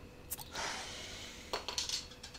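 A glass bottle of a carbonated drink being opened. There is a click of the cap, then a hiss of escaping gas for just under a second, followed by a few light clinks of the glass.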